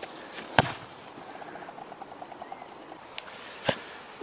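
A rugby ball is kicked with one sharp thud about half a second in. A faint run of quick, evenly spaced chirps follows, then another short knock near the end.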